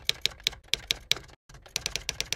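Typing sound effect: sharp keystroke clicks, about five a second, with a brief break about one and a half seconds in, then a quicker run of keystrokes.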